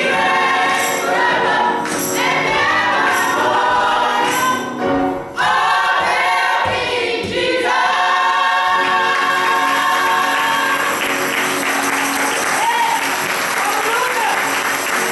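Gospel praise team singing with accompaniment, with jingles on the beat about once a second in the first few seconds. The song ends on a long held note, and applause rises over it near the end.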